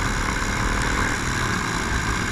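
Dirt bike engine running at a steady cruising speed, with heavy wind rumble on the helmet-camera microphone.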